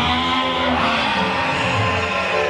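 Live worship music from a church band, with held notes sounding steadily.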